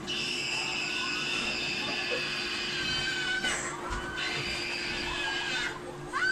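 A boy screaming on a slingshot thrill ride: one long, high, held scream for about three seconds, a brief rush of noise, then a lower drawn-out wail. It is played back on a TV and picked up off its speaker, with a steady hum underneath.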